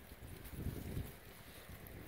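Faint wind rumbling on the microphone, swelling briefly about half a second in.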